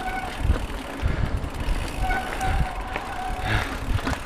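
Mountain bike ridden fast down a dirt singletrack: an uneven rumble from the tyres and frame over the bumpy trail, with a few sharp rattles and knocks. A thin whine comes in briefly at the start and again for about a second midway.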